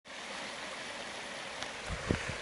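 Shallow peaty stream running over stones, a steady rushing trickle. A short low bump near the end.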